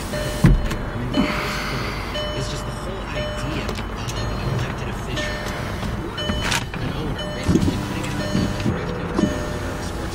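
Inside a car's cabin: a steady hum with a talk-radio broadcast playing low. A short electric whir comes about a second in, and there are several clicks and knocks from handling the controls.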